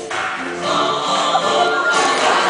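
Pre-recorded Vietnamese song played back for a lip-synced stage act: several voices singing together over backing music. From about half a second in, a rising wash of audience noise begins to build under the song.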